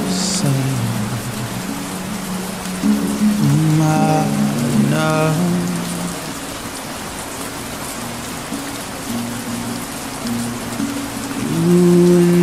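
Steady rain sound with a song playing over it: sustained low notes throughout, and a melody line with rich overtones coming in about four seconds in and again near the end.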